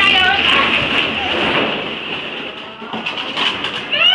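Plastic ball-pit balls clattering and rustling as people move through them, a dense noisy clatter. High-pitched squealing voices come at the start and again near the end.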